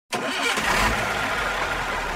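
Bus engine sound effect: an engine starting and running with a steady low rumble, cutting in suddenly at the very start.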